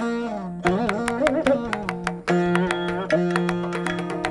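Saraswati veena playing a Carnatic melody, plucked notes held and bent in sliding glides (gamakas), with mridangam and ghatam strokes accompanying throughout.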